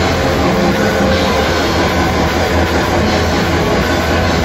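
Live metal band playing: distorted electric guitars, bass and drums in a dense, steady wall of sound.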